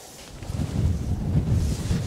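Wind buffeting the microphone: an irregular low rumble that rises and falls in gusts, building about half a second in.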